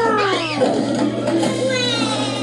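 A cartoon creature's vocal call sliding down in pitch, then a second falling call near the end, over background music.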